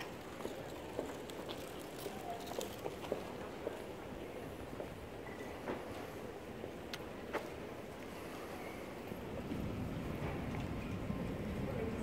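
Street ambience of a pedestrian shopping street: a steady background hum with scattered sharp clicks of footsteps on the paving. A low rumble grows louder near the end.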